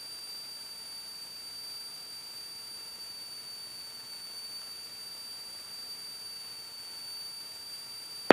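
Faint steady hiss with a thin, high-pitched whine held at one pitch: electrical line noise on the headset intercom audio feed between radio calls, with no engine heard.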